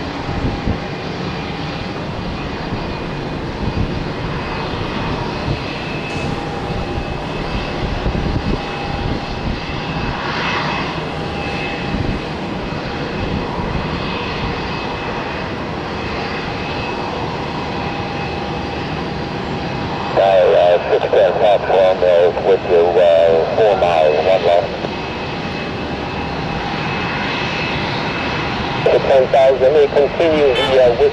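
Twin-engine jet airliner (Boeing 757) engines running steadily with a faint whine as it comes in on approach and lands. Air traffic control radio chatter cuts in about two-thirds of the way through and again near the end.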